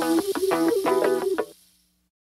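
Background music of quick, evenly repeated short notes, cutting off abruptly about one and a half seconds in, followed by silence.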